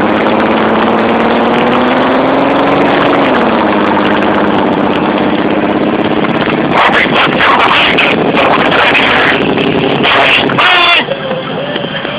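Car engine pulling under acceleration, rising in pitch for about three seconds, then dropping at a gear change and running steadily, over loud road and wind noise inside a moving car. Rougher bursts of noise come in the second half, and a short wavering high sound comes near the end.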